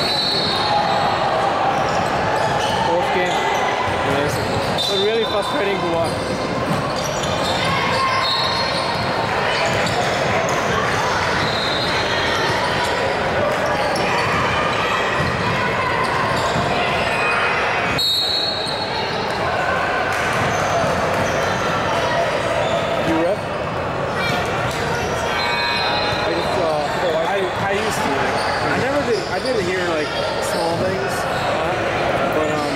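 Basketball game sound in a large, echoing gym: a ball dribbling on a hardwood court, players' sneakers squeaking now and then, and players' and onlookers' voices calling out.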